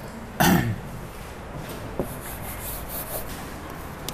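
A man clears his throat once, briefly, about half a second in. Then come faint chalk taps and scratches on a blackboard as writing begins.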